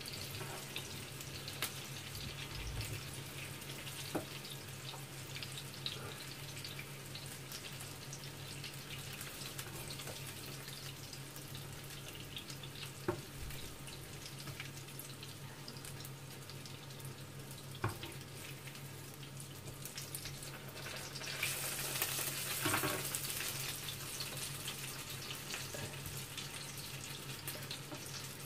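Meatballs frying in a pan of fat: a faint steady sizzle with scattered crackles, a few sharp clicks of the spatula against the pan, and a louder stretch of hissing about three-quarters of the way through. A low steady hum runs underneath.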